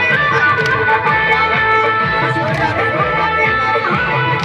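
Loud dance music with a steady beat, playing continuously as people dance to it.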